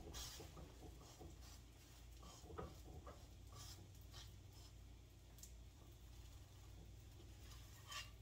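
Near silence with faint, scattered light scrapes and taps of a silicone spatula moving a flatbread around in a frying pan.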